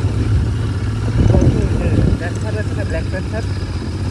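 Royal Enfield Interceptor 650's parallel-twin engine running while the bike rides along, getting louder for a moment between about one and two seconds in.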